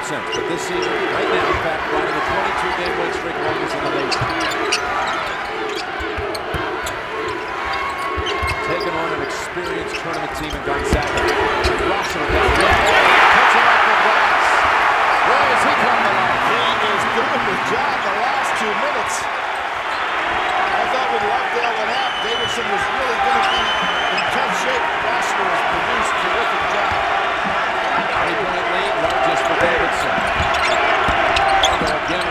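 Basketball arena sound from a hardwood court: a ball dribbling, short high sneaker squeaks and a steady crowd hum. About twelve seconds in, the crowd rises to a loud cheer around a play under the basket, and it stays raised for several seconds.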